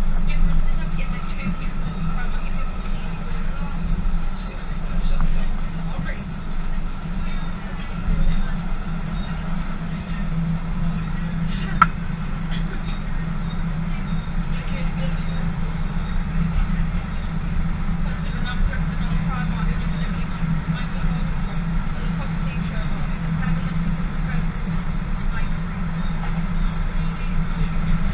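Tyne & Wear Metro electric train running at steady speed, heard from the driver's cab: an even low rumble with a faint steady hum, and one short sharp click about halfway through.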